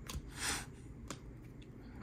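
Trading cards being handled in the hands: a brief soft slide of card against card about half a second in, then a single small click about a second in.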